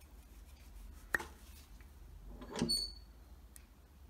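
Quiet handling of a turned wooden slimline pen blank and its metal bushings in the fingers: a single small click about a second in and a brief high ring just before three seconds.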